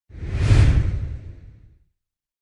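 Whoosh sound effect with a deep low rumble: it swells quickly, peaks about half a second in and fades out over the next second. It is the sting for an intro logo reveal.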